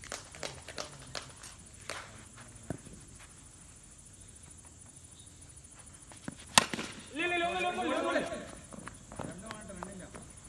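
A cricket bat strikes the ball once with a sharp crack about six and a half seconds in, followed at once by about a second of loud shouting from the players. Light scattered knocks and footsteps come before it.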